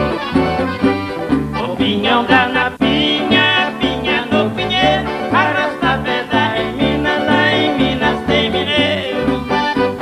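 Live sertanejo band of accordion, acoustic guitars and electric bass playing a lively instrumental passage with a steady, regular bass line.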